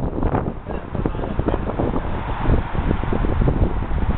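Wind buffeting the camera's microphone on a cruise ship's open deck: a loud, uneven low rumble that rises and falls.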